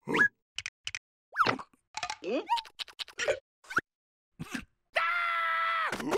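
Cartoon sound effects and a cartoon larva's wordless voice: short pops and clicks and quick squeaky calls that rise and fall, with silent gaps between, then one long held cry lasting about a second near the end.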